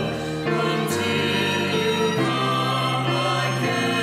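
A small choir of men's and women's voices singing the memorial acclamation of the Mass in sustained chords, the harmony changing several times.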